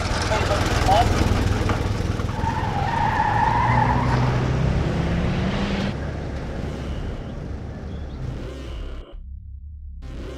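Car sound effect: a car driving off with a rush of engine and road noise and a short tire squeal about three seconds in. It drops to a quieter background about six seconds in.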